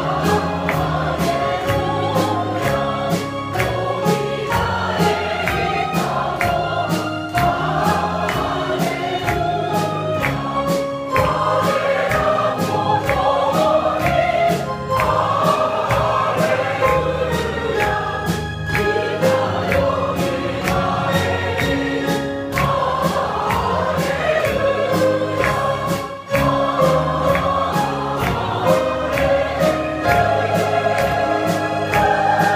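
A combined church choir, mostly women's voices, singing a hymn of praise in parts, continuously and at a steady level.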